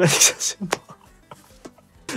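A man laughing breathily in a short burst, then a sharp click and a few faint clicks.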